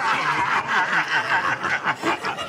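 Several men laughing loudly together, their laughs overlapping.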